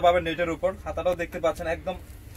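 A man talking continuously.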